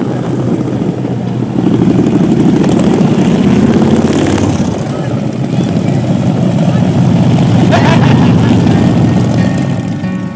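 Several cruiser motorcycles riding past one after another at low speed, their engines rumbling steadily. The sound swells about a second and a half in and again near the end as bikes pass close by.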